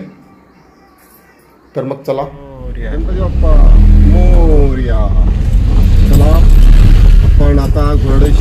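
Low rumble of a small car's engine and road noise heard inside the cabin while driving. It starts about two and a half seconds in and stays loud and steady, with a voice over it.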